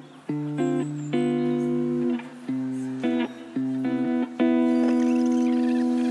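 Lofi hip hop instrumental: a clean plucked guitar plays a slow pattern of ringing notes and chords, with no drums, ending on a long held chord.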